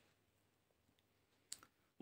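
Near silence, with a single faint click about one and a half seconds in.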